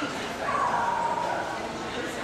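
A dog giving one drawn-out, slightly falling whine lasting about a second, starting about half a second in, over the murmur of voices in a large hall.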